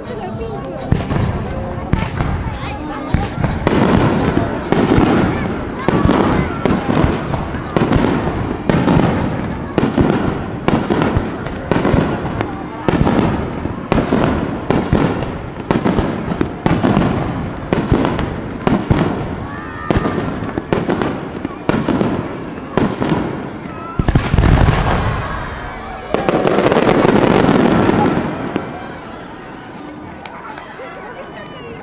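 Aerial firework shells bursting in quick succession, sharp reports about every half to three-quarters of a second. Near the end comes a heavy boom, then a dense volley of reports lasting about three seconds that stops suddenly.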